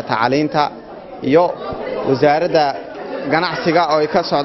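A man speaking in an interview, with a brief pause about a second in.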